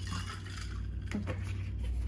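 Cold brew coffee pouring from a wide-mouthed plastic bottle into a glass cup, a steady splashing pour, over a low steady hum.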